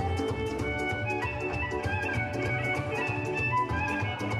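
Dance music led by a violin over a fast, steady beat.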